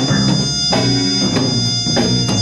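Live jazz-rock fusion band playing: drum kit hits about every two-thirds of a second over held keyboard and guitar chords and electric bass, with trumpet in the line-up.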